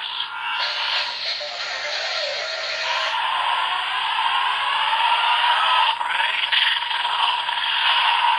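DX Forceriser toy belt with a Zero-Two Driver unit playing its electronic transformation sound effects and music through its small built-in speaker, with a falling glide about two seconds in and a click about six seconds in.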